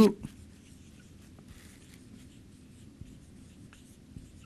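Felt-tip marker writing on a whiteboard: faint scratching strokes with a few small taps as the letters are drawn.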